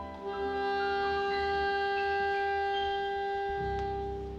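Saxophone holding one long, steady note over keyboard accompaniment, with a low keyboard chord coming in near the end. It sounds like the closing held note of a piece.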